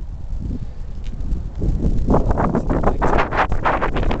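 Wind rumbling on the microphone of a handheld camera outdoors. From about halfway through it is joined by a quick run of rustling, knocking handling noise.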